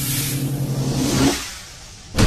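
Logo-intro sound effect: a swelling whoosh over a low steady hum, building to a peak about a second and a quarter in, then fading away.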